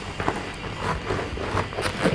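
Scissors snipping through a dried paper-mâché and packing-tape shell: a run of irregular short snips.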